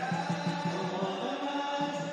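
Chanted vocal music: a slow melody of held, sung notes over a low repeating beat.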